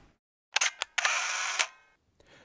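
A couple of sharp clicks about half a second in, then a short burst of hiss lasting about half a second, like a camera-shutter sound effect marking the transition between segments.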